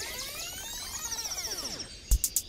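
Cartoon sound effect: a tone rich in overtones that glides up in pitch and then back down in one smooth arch, fading out just before the end.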